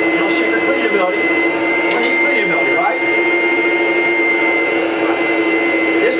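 Rainbow canister vacuum cleaner running steadily, a constant motor hum with a high whine, pulling air through a clean filter bag with plenty of suction and airflow.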